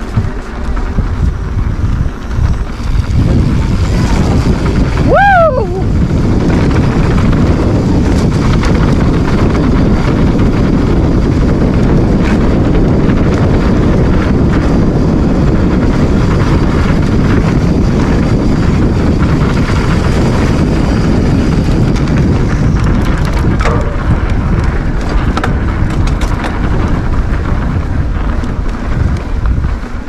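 Wind rushing over the microphone and tyres rolling on dirt singletrack as a mountain bike is ridden fast, a loud steady rush. A brief squeal that rises and falls in pitch comes about five seconds in.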